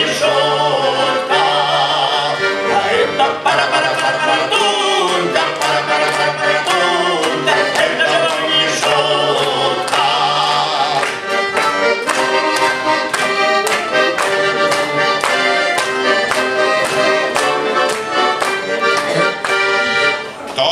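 Accordion playing a folk-style instrumental passage, with sustained chords and melody; from about halfway it takes on a steady beat of about two or three strokes a second.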